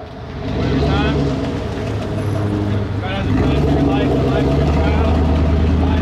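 Engine of a large road vehicle running with a loud, deep, steady drone that builds over the first second, with faint voices underneath.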